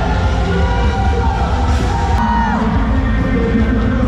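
A loud university cheer song with a heavy bass beat plays over a gymnasium's sound system. The crowd in the stands cheers along, and there is a short falling yell about halfway through.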